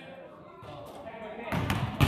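A basketball bouncing on a hardwood gym floor, a few low thuds near the end in a large, echoing room, after a quiet stretch of gym room tone.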